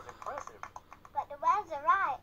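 A high-pitched children's-TV puppet character's voice exclaiming praise, played from a television and picked up off its speaker, with a few short clicks in the first second.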